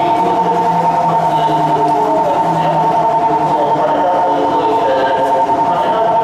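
A steady high electronic signal tone on a railway station platform, held unbroken for about seven seconds, with lower tones shifting beneath it.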